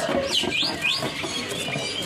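A small bird giving about three quick, high chirps that sweep up and down in pitch, all within the first second.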